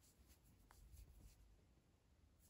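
Near silence, with faint rubbing and light ticking of yarn drawn over a crochet hook as double crochet stitches are worked.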